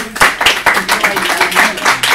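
Audience applauding: many overlapping hand claps, dense and irregular.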